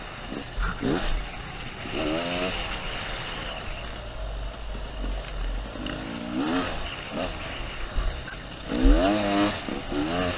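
Enduro dirt bike engine revving in short bursts, rising in pitch with each throttle opening, about four times, over a steady low rumble from the bike and trail.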